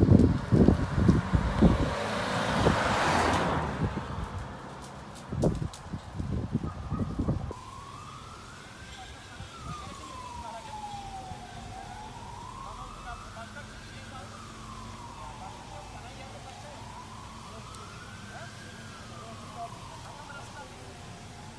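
Loud rough noise with knocks for the first several seconds, then a slow wailing emergency-vehicle siren, rising and falling about every five seconds, heard more faintly through the rest.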